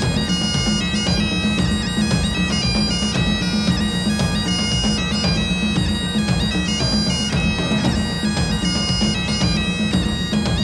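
Highland bagpipes playing a stepping melody over their steady drone, with drums underneath; the pipes come in right at the start.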